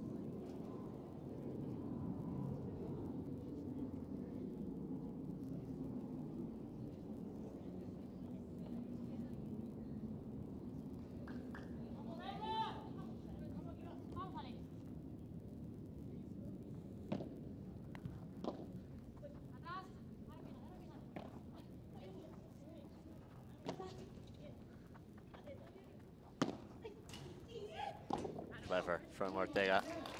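Padel rally: sharp pops of the ball struck by rackets and rebounding off the glass walls, spaced a second or more apart in the second half, over a steady low murmur of background crowd noise with a few faint voices.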